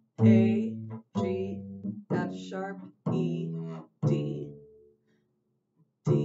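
Double bass played pizzicato: five low plucked notes about a second apart, each ringing and fading before the next.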